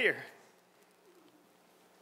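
A man's voice trailing off at the end of a spoken word, then near silence: room tone.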